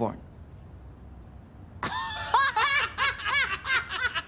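A short hush, then about two seconds in a woman bursts into high-pitched laughter, a quick run of ha-ha pulses that keeps going.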